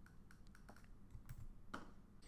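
Near silence with a few faint clicks of a computer keyboard.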